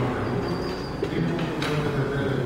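A man's voice echoing indistinctly through a large hall, with a sharp click about one and a half seconds in.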